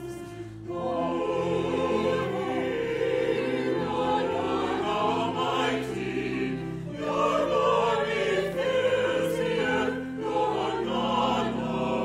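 Church choir of mixed men's and women's voices singing together, with long steady low notes held beneath the voices. There is a short breath-like dip just after the start before the singing swells again.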